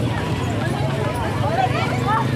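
Many people talking at once, with a horse's hooves clopping on a paved road.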